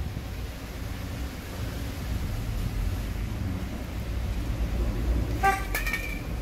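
A steady low rumble of background noise, and near the end a short car horn toot lasting about half a second.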